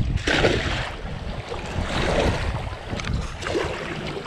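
A four-foot cast net landing on the water with a splash just after the start, followed by water lapping and wind rumbling on the microphone.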